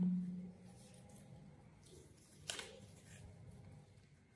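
Faint scratching of a ballpoint pen writing on folded paper, with a single sharp click about two and a half seconds in.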